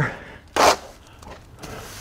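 Steel plastering trowel spreading wet stucco base coat on a wall: one short scrape about half a second in, then a fainter rub near the end.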